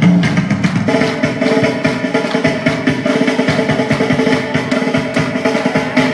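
Fast Russian folk dance music with rapid, driving drumming over held melody tones.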